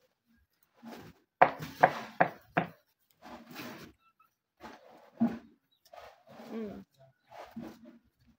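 A person chewing a mandazi, with four sharp mouth smacks close together about a second and a half in, then scattered softer chewing noises.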